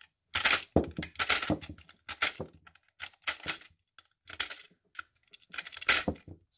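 Cartridges (7.62x39) being pushed one after another out of the feed lips of a loaded AK 75-round drum magazine, each a sharp metallic click and rattle, about a dozen in quick succession. The wound follower spring pushes each round up as the one above it is stripped out, the sign that the drum holds spring tension.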